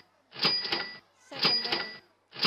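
Quiz countdown timer sound effect ticking off the answer time: a ringing, clicking pulse about once a second, two in this stretch.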